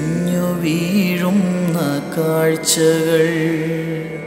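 Music from a slow, sad Malayalam song: a male voice sings a melody with gliding ornaments over a sustained instrumental accompaniment.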